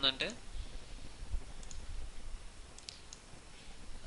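A few faint computer mouse clicks, in two close pairs about a second apart, over low room noise.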